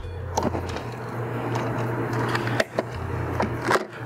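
Wire strippers stripping the insulation off a black hot wire: a few short clicks as the jaws bite and pull, over a steady low hum.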